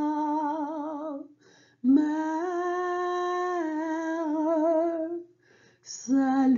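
A woman's solo voice singing the slow closing line of a French Marian hymn: a note with vibrato ends about a second in, and after a short breath she holds one long, steady note.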